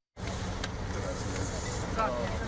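After a brief dropout at the cut, a vehicle engine idles with a steady low rumble, with faint voices over it.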